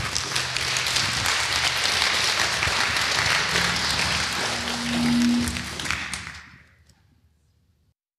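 Audience applauding, fading out after about six seconds.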